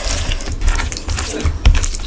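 Close-miked hand mixing basmati rice with oily curry on a steel plate: wet squelching and irregular crackling, with soft low thuds.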